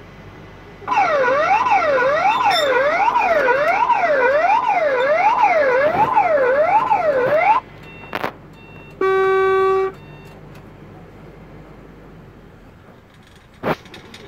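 Electronic siren in a driving-test car, wailing up and down about once every three-quarters of a second for nearly seven seconds, then cutting off abruptly. This is typical of the emergency-situation alarm that the driver must answer by braking and switching on the hazard lights. About two seconds later a single steady electronic beep sounds for about a second.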